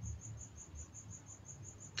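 Faint chirping of an insect, most likely a cricket: a thin, high, even pulse repeating about five times a second, over a low steady hum.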